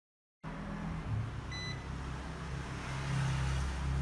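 A single short electronic beep about a second in, over a steady low hum, as a repaired laptop motherboard is powered up.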